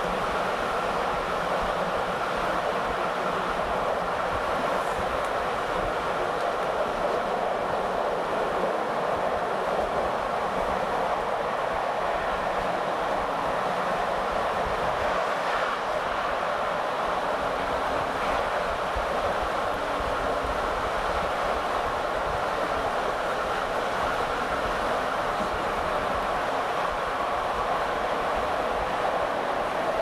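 Steady rolling noise of a passenger train running at speed, heard from aboard one of its coaches: wheels on the rails and air rushing past.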